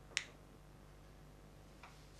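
A single sharp click a fraction of a second in, with a fainter click near the end, over a faint steady hum in a small room.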